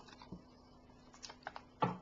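Plastic snack bag being handled and opened: a few faint crinkles and clicks, more of them in the second half.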